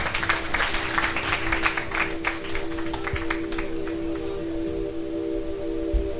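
Audience clapping that thins out and stops about three and a half seconds in, over a steady sustained drone of several held tones from the stage.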